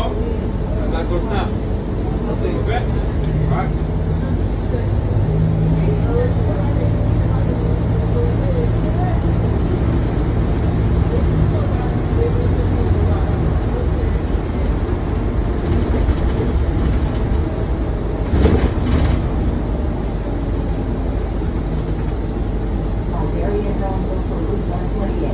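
Cabin noise of a New Flyer Xcelsior XDE40 diesel-electric hybrid bus under way: steady drivetrain and road noise, with a low hum that holds for several seconds in the first half. There is a short knock or jolt about three-quarters of the way through.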